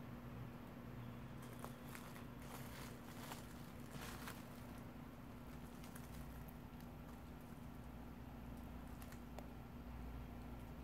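Faint crackling and rustling of gravel and dry leaves, a cluster of light clicks in the first half, over a faint steady hum.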